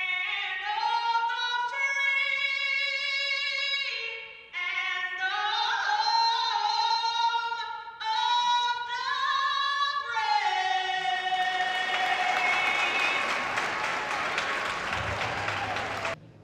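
A woman singing the national anthem solo into a microphone, in long held phrases. Crowd cheering and applause swell in over the final held notes near the end.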